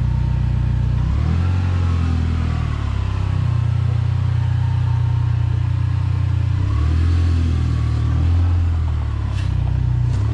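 Dodge Neon SRT-4's turbocharged 2.4-litre four-cylinder with a Borla exhaust, running at low revs as the car pulls away slowly on its newly fitted clutch. The engine note drops and rises several times as the throttle and clutch are worked.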